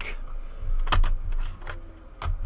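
An Amiga 500 setup being switched off: a few sharp clicks and knocks from the power switch and handling at the floppy drive, the clearest about a second in. Under them a low hum and a faint falling tone as the attached hard drive winds down after power is cut.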